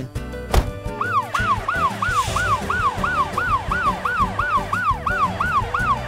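Ambulance siren starting about a second in: a fast rising-and-falling wail, about three cycles a second, repeating steadily.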